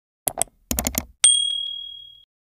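Intro sound effects: several quick mouse clicks, then a single high bell ding about a second in that rings out and fades.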